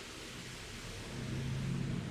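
Steady background hiss with a low hum, slowly growing louder: room tone picked up by the microphone.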